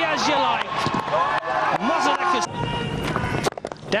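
Cricket match broadcast audio: voices over background music, with the television commentator's next call beginning near the end.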